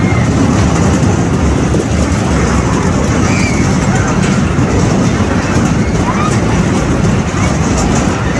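Spinning fairground ride in motion, heard from a seat on the ride: a loud, steady rumble, with a few faint voices calling over it.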